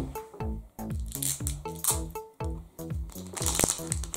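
Background music, a steady run of short notes. Near the end, the plastic wrapping of a toy surprise ball crinkles as it is peeled off.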